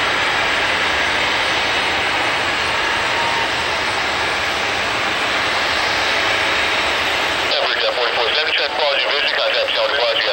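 Twin-engine jet airliner at takeoff thrust on its takeoff roll, heard from behind as a steady, loud rush of engine noise. About seven and a half seconds in, thin-sounding air traffic control radio speech cuts in over it.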